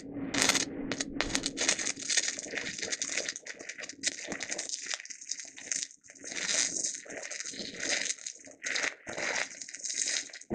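Stick-welding arc of a fast-freeze cellulose electrode running an open root pass on beveled steel plate: a steady crackling, whooshing arc broken by several short gaps as the rod is whipped out of the puddle and back in. The whooshing is the sound of the arc burning through the root and scooping out the back of the plate.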